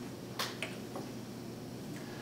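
Room hum with two or three sharp little clicks in the first second, during a pause in a talk.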